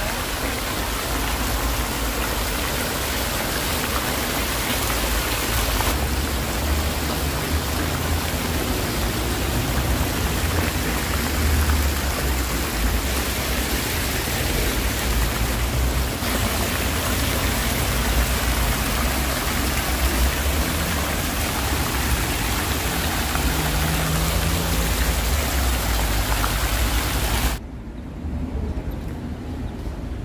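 Fountain jets splashing into a stone basin: a steady, dense rush of falling water with a low rumble underneath.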